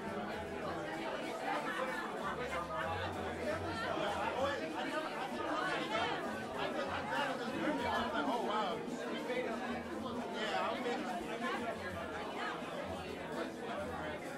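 Crowd chatter: many people talking at once in a small club, overlapping indistinct voices with no music playing.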